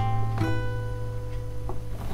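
Acoustic guitar with an A minor 9 chord ringing out, fresh notes picked about half a second in, then slowly dying away.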